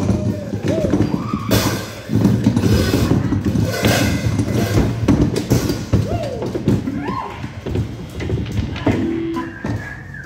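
The loud, noisy ending of a live rock song on electric guitar, with sliding, ringing guitar tones and thumps, thinning out near the end.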